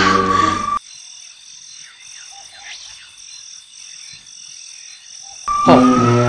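Background music cuts off about a second in, leaving a night-time chorus of calling frogs: a high pulsing call repeating about twice a second, with faint chirps beneath. The music comes back near the end with a rising tone.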